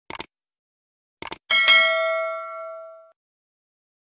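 Subscribe-button sound effect: two quick clicks, then another pair of clicks a little over a second in, then a single bell ding that rings with several tones and fades out over about a second and a half.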